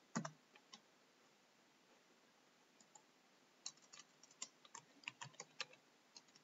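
Faint computer keyboard and mouse clicking. There is a single click at the very start, then a quick run of keystrokes through the second half.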